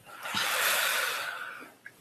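A long breath blown out close to the microphone, swelling and then fading over about a second and a half.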